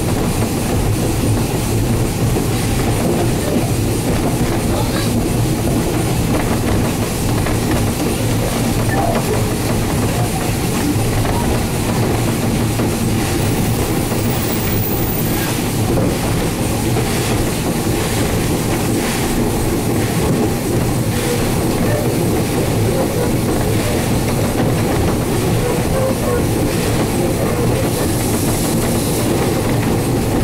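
Steam locomotive rolling slowly along the track, with steady running noise and the wheels clicking over rail joints.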